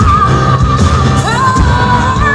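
Live pop band with a female lead singer: she holds a note with vibrato over drums, bass and electric guitar, sliding up to a new note a little over a second in.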